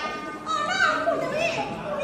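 A Min opera performer delivering a line in Fuzhou dialect, in stylized stage speech with pitch rising and falling.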